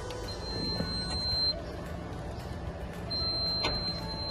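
Electronic door-entry lock or intercom sounding two long, steady, high-pitched beeps, each about a second long, with a sharp click near the end. Low street rumble runs underneath.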